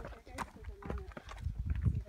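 Footsteps on a rocky dirt trail, a few sharp steps in the first second, with a low rumble on the microphone that swells near the end.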